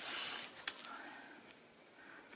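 A hand rubbing over paper freshly glued to an envelope, a short dry rustle, followed by a single light tap about two-thirds of a second in, then quiet.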